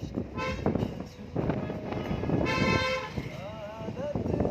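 A vehicle horn toots twice: a short toot about half a second in, and a longer, louder one about two and a half seconds in. Both sound over a low rumbling background. Near the end a wavering sung melody begins.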